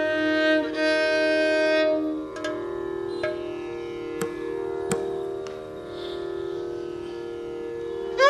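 Carnatic violin holding one long note over a steady drone, stopping about two seconds in. The drone then carries on alone, with a few sparse, sharp strokes from the mridangam and ghatam.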